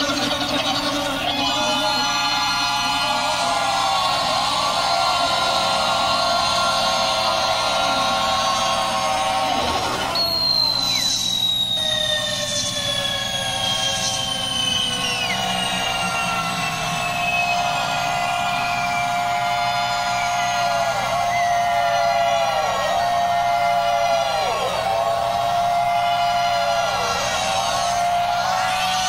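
Live rock band in an audience recording playing a sustained, effects-heavy instrumental passage. It holds several tones at once, with long slow falling glides starting about ten seconds in and repeated swooping, siren-like dips in pitch in the second half.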